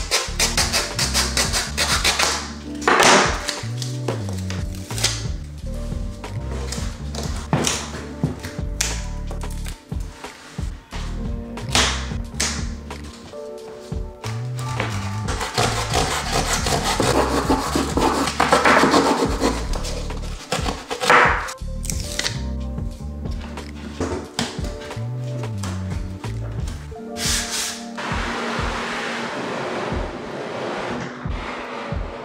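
Background music with a moving bass line, with a small hacksaw's rasping strokes cutting through a block underneath it at times.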